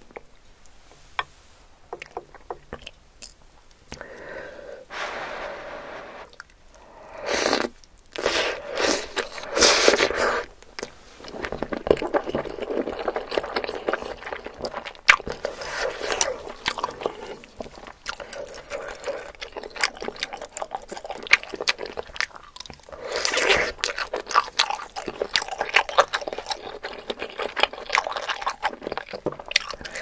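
Close-miked mouth sounds of eating saucy instant noodles: loud slurps several seconds in, then wet chewing with many small mouth clicks.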